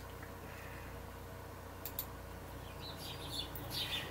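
Two light clicks about two seconds in, then faint bird chirps from about three seconds on, played back through computer speakers from outdoor video footage.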